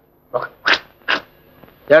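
A man laughing in three short bursts.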